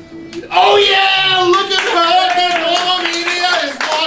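A long held note ends. About half a second in, an audience bursts into applause with loud overlapping cheers and whoops, in response to the end of the song.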